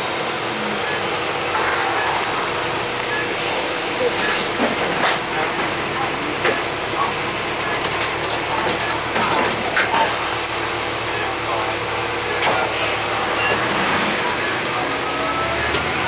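Interior of a 2005 Gillig Phantom transit bus under way: the Cummins ISL diesel engine runs steadily under road noise and cabin rattles. Two short bursts of air hiss come through, about three seconds in and again near the end.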